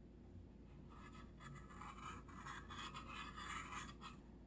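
Paintbrush strokes on a wooden birdhouse: a faint run of quick scratchy brushing that starts about a second in and stops suddenly at the end.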